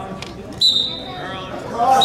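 A shrill, steady whistle blast starting about half a second in and lasting about a second, with a second blast starting near the end, over shouting voices.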